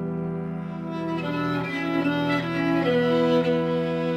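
Piano trio of violin, cello and piano playing contemporary classical chamber music: low notes held, with a higher line of quickly changing notes coming in about a second in.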